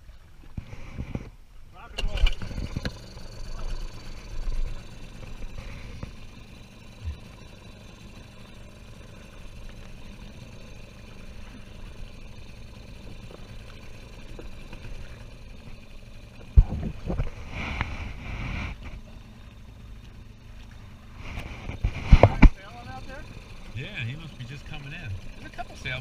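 Small outboard motor running steadily as an inflatable dinghy crosses choppy water. Waves slap against the hull, with loud thumps about two seconds in, then twice more later on.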